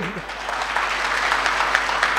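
Audience applauding: a steady, even clatter of many hands clapping, starting as a woman's voice trails off just after the start.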